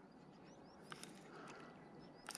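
Near silence: faint outdoor quiet with a few soft, high chirps and ticks about a second in.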